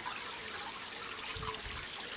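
A faint, steady trickle of liquid.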